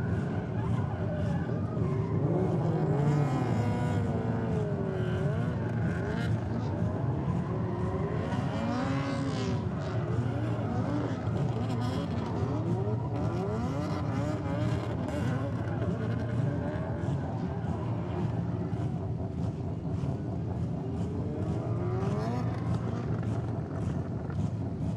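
Drift car's engine revving up and down over and over, its pitch sweeping up and down as the throttle is worked through the slide, with tyres squealing. A steady low drone runs underneath.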